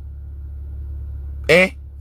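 A steady low hum fills a pause in a man's talk. Near the end he says a short 'Hein?'.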